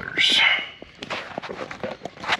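Handling noise of a liner mat insert being fitted into a car's rear compartment: a short rustle, then a run of light clicks and taps.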